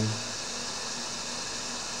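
Steady loud hiss of deliberately noisy room sound picked up by a microphone with noise suppression switched off: a white noise app at full volume, an overhead fan, air conditioning and thunderstorm sounds. It cuts off suddenly at the very end as Nvidia RTX Voice noise suppression is switched back on.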